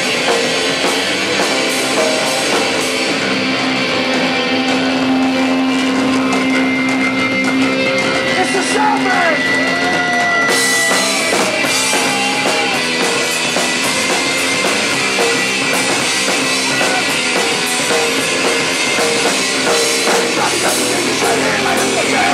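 Punk band playing live at full volume: distorted electric guitar, bass and drum kit in a steady, unbroken wall of sound.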